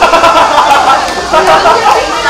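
Several people's voices calling out and talking over one another, loud and continuous.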